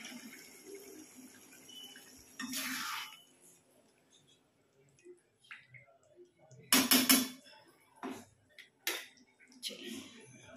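Metal spatula scraping and knocking against a pan of potato curry as it is stirred. There are short scrapes, the loudest about seven seconds in, then a few light knocks.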